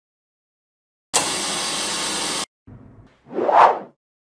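Logo-intro sound effects: after about a second of silence, an even burst of hiss-like noise that cuts in and out abruptly, then a whoosh that swells and fades near the end.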